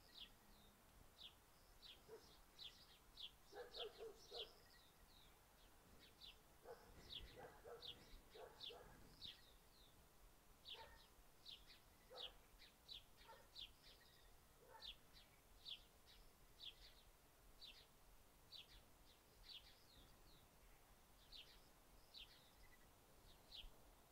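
Faint bird chirping: a steady run of short, high, falling chirps, about one or two a second.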